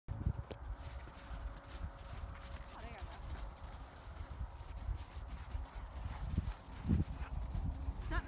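Wind buffeting an outdoor microphone as a low, uneven rumble, with faint distant voices around three seconds in.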